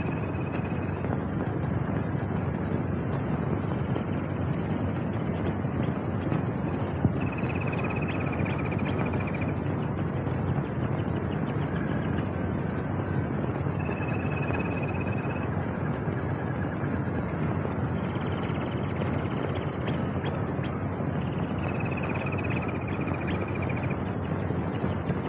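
Steady hiss and crackle of an old film soundtrack, with a faint high tone that comes and goes about five times.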